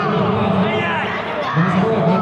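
Many overlapping voices of spectators and coaches calling out and shouting at once in a large echoing hall.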